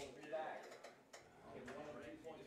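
Faint voices in the background with three short sharp clicks spread through the two seconds.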